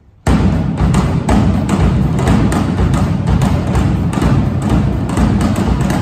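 A big band starts a swing chart with a sudden, loud entry about a quarter second in: horns, electric guitar, bass and drum kit playing together over a steady beat of drum hits.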